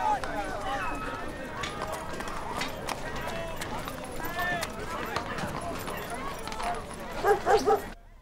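Street bustle of indistinct voices with scattered knocks, then near the end three loud dog barks in quick succession.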